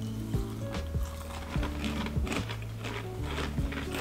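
Background music with sustained low notes that change pitch every second or so. Under it, faint crunching as a dry fried snack mix is chewed.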